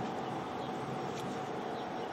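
Steady background hum and hiss with a faint constant tone, and no distinct event.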